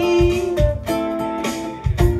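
Ukulele strumming ringing chords with drums keeping time, a few kick-drum thumps under the chords, in an instrumental gap between sung lines.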